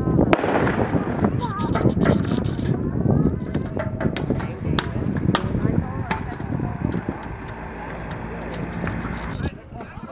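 Carbide cannons firing: milk churns and a drum loaded with calcium carbide, the acetylene touched off with a torch. One loud bang rings out just after the start, and a few sharper cracks follow around the middle, over people talking.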